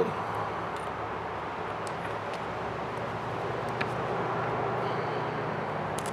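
Steady workshop hum, with a few faint clicks from side cutters clipping the lead sprue off cast pyramid sinkers.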